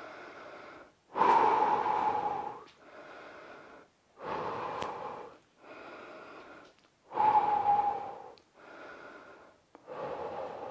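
A man's slow, deep recovery breathing between exercise sets, close to the microphone: quieter and louder breaths alternate, about one full breath every three seconds.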